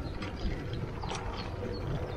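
Bicycle rolling over cobblestones: a steady low rumble with small rattles and clicks.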